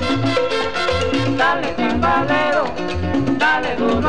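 Salsa band recording played from a 45 rpm vinyl single: an instrumental passage with a steady bass and percussion rhythm, and melody lines that slide up and down in pitch from about a second and a half in.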